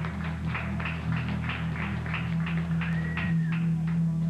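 Live rock band playing amplified guitars: a held low note under a quick run of picked or struck accents, about five a second, with a short high tone that rises and falls just after three seconds in.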